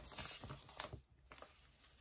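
Faint rustle of paper as a printed sewing-pattern instruction booklet is handled and smoothed flat, with one light tap just under a second in.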